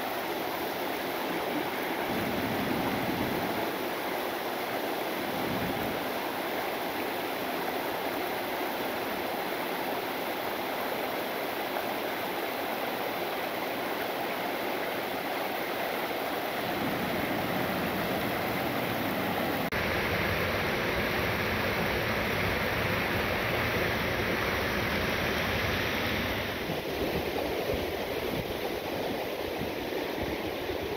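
Fast-flowing river rushing over rocks and rapids below a low waterfall: a steady rush of water.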